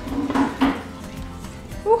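Quiet background music, with a woman's short hum and puff of breath about half a second in, a reaction to the heat of the chile in the food.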